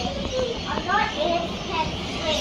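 Laughing kookaburra calling: a run of quick, rising and falling voice-like notes.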